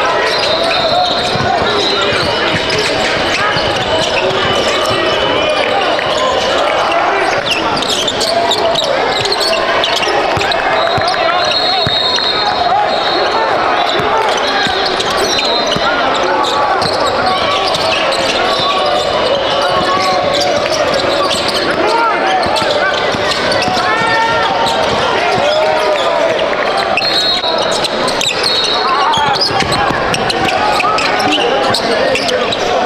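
Basketball game sound on a hardwood court: a steady hubbub of many voices from players and spectators, a basketball bouncing, and sneakers squeaking in high, drawn-out squeals several times.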